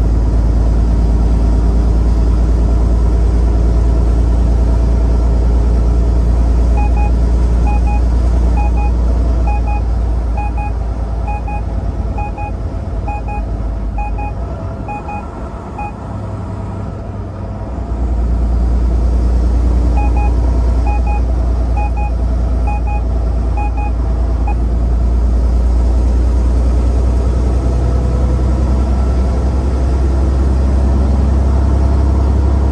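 Steady low rumble of a Volvo VNL860 semi-truck's engine and road noise inside the cab at highway speed, easing briefly around the middle. A short dashboard beep repeats about once a second for several seconds, stops, then returns for a few more beeps.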